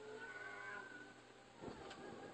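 A drawn-out, high-pitched, meow-like cry that fades out about a second in, followed by a few soft knocks near the end.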